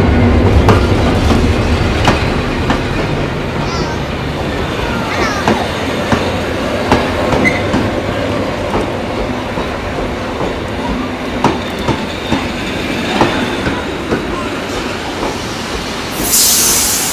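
Vintage wooden passenger coaches rolling past at close range. Their wheels click irregularly over the rail joints, with short squeals and rattles from the bodies. A diesel locomotive's low engine rumble fades away in the first second.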